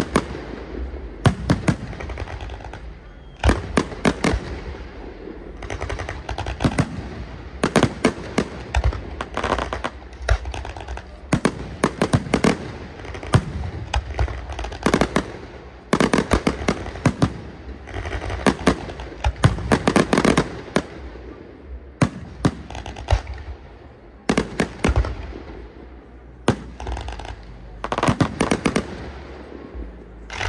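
Fireworks display: aerial shells bursting overhead, loud sharp bangs coming in irregular clusters, several in quick succession at times, with short gaps between volleys.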